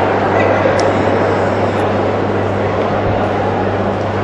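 Steady din of a large, echoing hall: indistinct visitors' voices blurred together, over a constant low hum.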